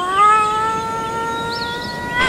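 A boy's long cry, rising in pitch at first and then held on one steady, high note.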